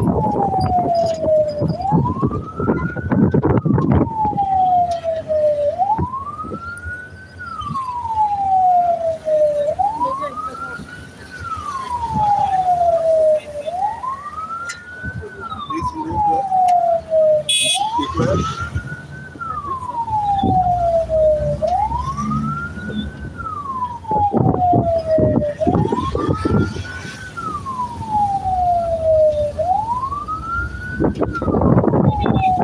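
A vehicle siren wailing on a slow cycle: each wail rises quickly, then falls slowly, repeating about every four seconds. Under it runs the rumble of vehicle and motorcycle engines on the move.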